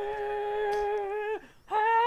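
A man singing wordless long held notes in a high voice: one steady note for about a second and a half, a short break, then a second, slightly higher note.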